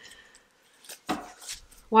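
A deck of cards being handled and shuffled in the hands: a few short papery slaps and rustles, the loudest about a second in.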